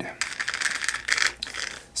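An opened JX high-voltage RC servo running on a servo tester with its top cover off, its motor and brass gear train spinning: a high whir laced with fast fine clicking from the meshing gears, swelling and fading in strength.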